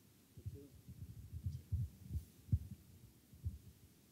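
Handheld microphone being handled as it is passed from one person to another: a series of soft, irregular low thumps, the loudest about two and a half seconds in.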